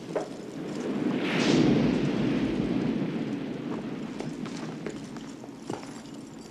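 Movie soundtrack effect: a rushing noise with no clear pitch swells up over the first second and a half and then slowly fades, with a few faint clicks and knocks.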